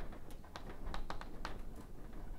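Chalk writing on a chalkboard: a quick, irregular run of sharp taps and scratches as a word is written out.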